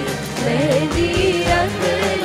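Live garba song: a singer's melody held and bending over a steady drum beat and backing instruments from the stage band.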